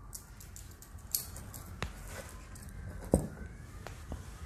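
Metal links of a replica Leatherman Tread multi-tool bracelet clicking and clinking as it is handled and set down: a few sharp ticks over faint handling noise, the loudest about three seconds in.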